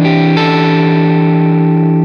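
Gibson Les Paul electric guitar played through Amplitube amp-simulation software with an overdriven tone. A chord is struck about a third of a second in and left ringing steadily.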